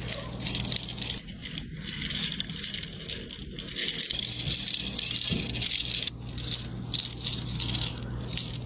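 A small clear plastic wheeled desk cleaner rolled back and forth over notebook paper, its wheels and roller rattling steadily as it sweeps up eraser crumbs. A low steady hum runs underneath.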